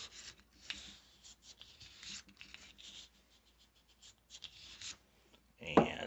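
Bore brush on a cleaning rod being scrubbed back and forth through the barrel of a Taurus TX22 .22 pistol: a run of short, uneven scratchy strokes. A louder bump near the end.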